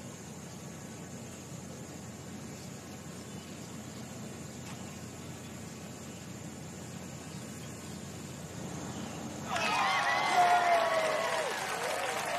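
Quiet outdoor course ambience, then about nine and a half seconds in a gallery of spectators breaks into cheering and clapping as a birdie putt drops into the hole.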